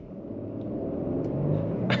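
Lexus LX 600's twin-turbo V6 under hard full-throttle acceleration, heard from inside the cabin, the engine note growing steadily louder.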